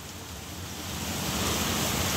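Wind blowing as a steady rush that grows louder over the last second and a half.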